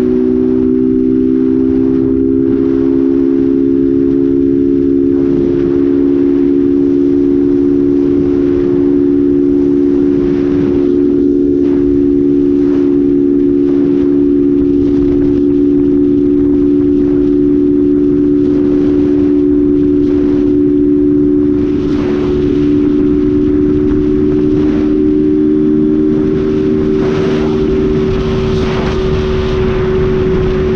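Honda 160 single-cylinder motorcycle engine, its air filter removed, running at a steady cruising speed at an even, unchanging pitch. Heard from the rider's seat, with wind rushing across the microphone.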